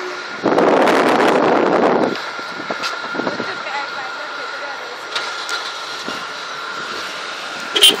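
A car passes close by with a loud rush lasting about a second and a half. Underneath, a jet airliner's engines give a steady high whine from the runway. There is a brief knock near the end.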